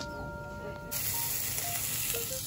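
A soft background music melody, then about halfway through a steady hissing sizzle of beef cubes frying in a pan takes over.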